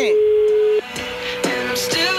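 Telephone ringback tone heard over the phone line: one steady beep of a single pitch, cutting off suddenly under a second in, as the call rings unanswered on the other end. Faint background music runs underneath.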